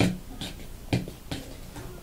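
A fork beating butter and icing sugar by hand in a plastic mixing bowl, knocking and scraping against the bowl about twice a second.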